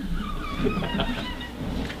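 Indistinct voices and light laughter from a few people in a meeting room.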